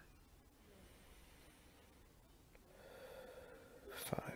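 Near silence, then a faint, slow breath drawn in through the nose, starting about two-thirds of the way in.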